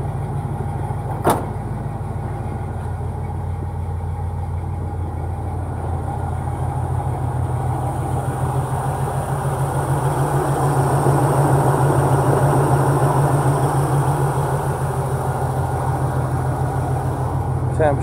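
GM G-body car's engine idling steadily, left running to warm up so the temperature gauge can be watched. It grows louder around the middle as it is heard close up in the open engine bay, with a single sharp click about a second in.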